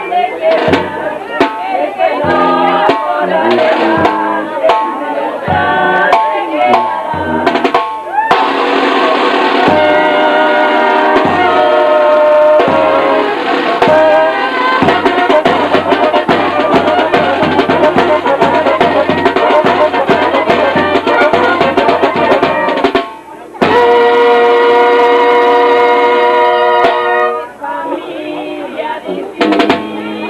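A street band's large bass drum, beaten with a mallet, and a snare drum playing, with voices in the first few seconds. From about eight seconds in, a melody of long held notes plays over the drumming, stopping briefly twice near the end.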